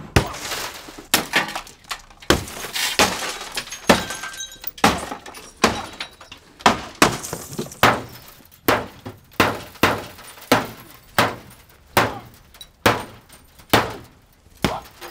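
A car's windshield and body being smashed with blow after blow, about twenty sharp strikes at a steady beat of one or two a second, glass cracking and breaking with each hit.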